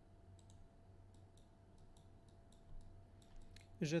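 Faint, irregular clicks of a computer mouse over a low steady hum, with a word of speech starting near the end.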